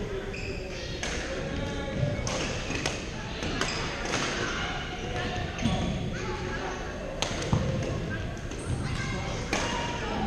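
Rackets striking a shuttlecock in badminton rallies: sharp, irregular cracks, sometimes two or three within a second, echoing in a large gym over steady background chatter.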